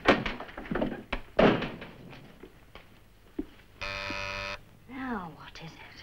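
A door banging and thudding as it is pulled open and shut in the first second and a half, then a short steady electric buzz a little after halfway, followed by a brief falling, voice-like sound.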